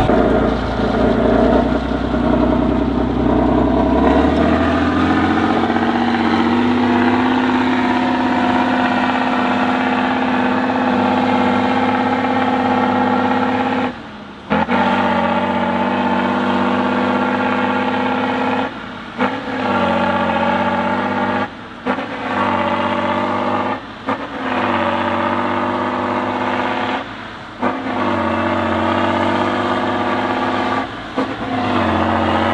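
Tatra 8x8 trial truck's diesel engine climbing in pitch over the first few seconds, then held at high revs under heavy load while pouring black smoke. Several brief, sudden dips break the engine sound along the way.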